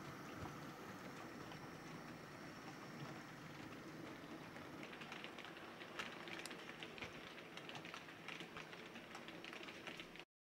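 Model train running on layout track: a faint steady running noise, with scattered light clicks from the wheels in the second half.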